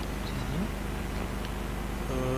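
Steady low electrical hum and room noise picked up through the meeting's microphone system, with a brief faint murmur of a voice about half a second in.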